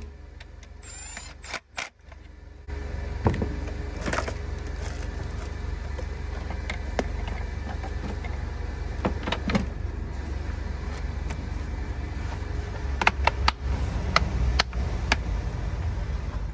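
Plastic air filter housing and its clips being refitted by hand over a small car engine: scattered clicks and knocks, a few close together near the end, over a steady low hum.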